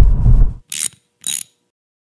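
Low rumble of a car engine idling, heard inside the cabin, cut off abruptly about half a second in. It is followed by two short, sharp mechanical clicks about half a second apart, a sound effect accompanying the logo.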